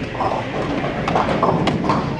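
A run of sharp knocks and clatter at uneven intervals over the murmur of voices in a large room.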